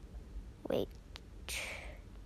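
A person's whispered voice: a soft "wait" about a second in, then a breathy hiss near the end, with a faint click between them.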